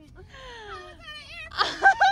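A drawn-out, falling "ohhh" of emotional surprise, then, near the end, a louder high squeal that breaks into laughter.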